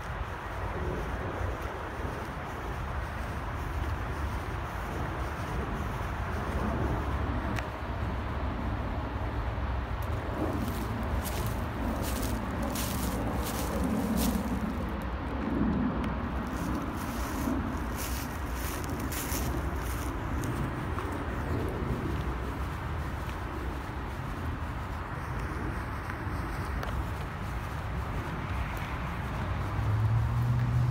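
Wind on the microphone over a steady low rumble, with a car passing on a road about halfway through, rising and then fading. A string of faint clicks runs through the middle third.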